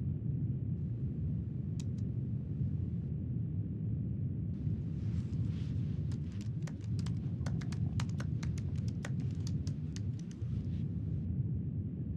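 Laptop keyboard typing: two single keystrokes, then a quick run of keystrokes from about four and a half seconds in until near the end. Beneath it is the steady low drone of an airliner cabin.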